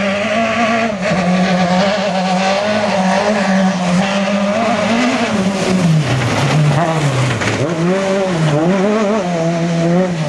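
Rally car engine running hard on a dirt stage, coming closer and passing close by about six seconds in, then pulling away uphill. In the second half its revs fall and rise again several times.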